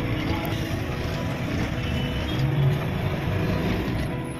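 Truck engine running at low speed in stop-and-go traffic, heard from inside the cab, with a short louder swell a little past the middle.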